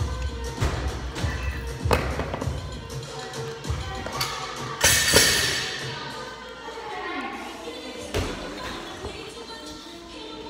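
45 lb rubber bumper plates being slid off a steel barbell sleeve and dropped onto a rubber gym floor: several separate thuds and clanks, the loudest a metallic clatter with ringing about five seconds in, over background music.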